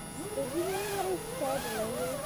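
A girl's voice speaking at some distance, higher-pitched and quieter than the nearby man's voice, the words unclear; it rises and falls as if asking a question.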